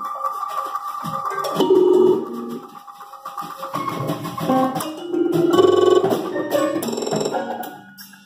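A small band playing live: a drum kit and percussion with sharp, wood-block-like hits, under sustained and shifting pitched tones. Loudness swells and falls back, with the busiest, loudest stretch about five to six seconds in.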